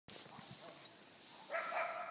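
A faint dog call from far off: one drawn-out bark or howl that starts about one and a half seconds in and holds an even pitch before fading.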